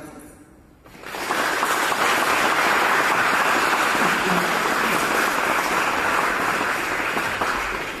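Audience applause, swelling about a second in, holding steady and beginning to die away near the end.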